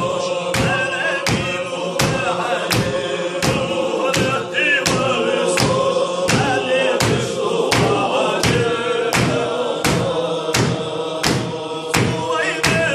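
Group of men singing a Chechen zikr together, voices over a held drone note, with hand-claps keeping a steady beat of about three claps every two seconds.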